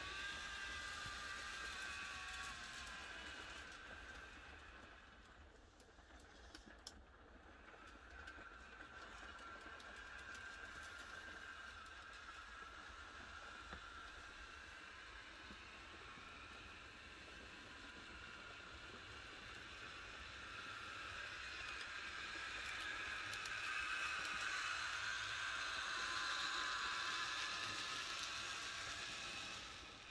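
Whine of an N gauge model locomotive's small electric motor and its wheels running on the track, wavering in pitch, fading around a quarter of the way in and growing louder near the end as the train comes closer.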